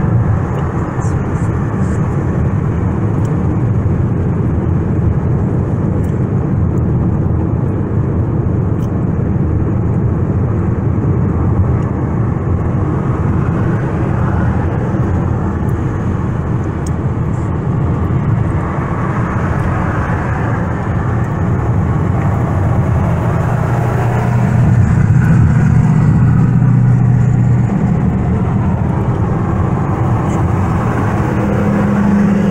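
Steady road and engine noise of a moving car, heard from inside the cabin at highway speed, with a low hum swelling louder for a few seconds near the end.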